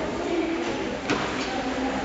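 Background murmur of distant voices in a large sports hall, with a single sharp knock about a second in.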